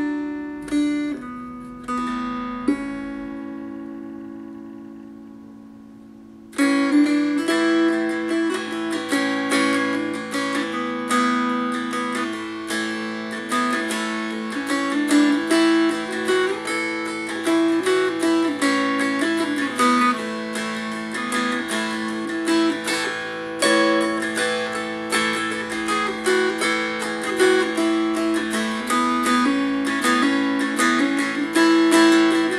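A three-string baritone mountain dulcimer with a Honduras mahogany body and top, tuned AEA with a single melody string, being picked. A chord is left to ring and fade for the first few seconds. About six seconds in, brisk picking starts again over the ringing drone strings.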